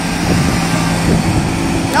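Ride-on lawn mower engine running with a steady low hum.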